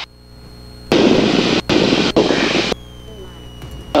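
Light-aircraft cabin heard through the headset intercom: the engine gives a steady low hum. About a second in, a loud burst of hiss-like noise starts abruptly, runs nearly two seconds with two brief gaps, and cuts off sharply.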